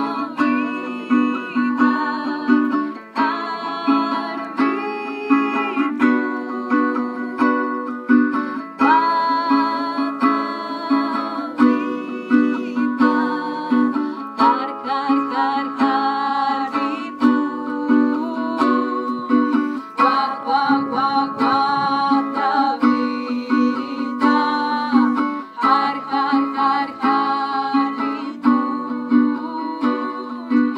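A song sung live to a strummed small acoustic guitar, the strumming and singing continuing throughout.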